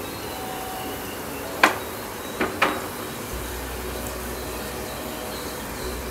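Whole spices (bay leaf, star anise, cinnamon, cloves, fennel seeds) frying in hot oil in a pressure cooker: a steady low sizzle with a light crackle, three sharp pops, one under two seconds in and two close together about a second later.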